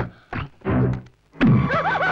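Dramatic film background score: a few heavy pitched percussion hits, then about two-thirds of the way in a sustained melodic passage begins with gliding, wavering lines over held tones.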